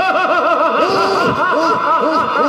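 A male stage actor's loud, drawn-out theatrical villain's laugh, a quick run of 'ha ha ha' that swoops up and down in pitch several times a second.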